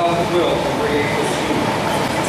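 Indistinct speech, a voice going on without pause over a steady background of hall noise; the words are not clear enough to make out.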